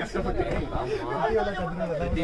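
People talking, voices overlapping in casual chatter; only speech, no other clear sound.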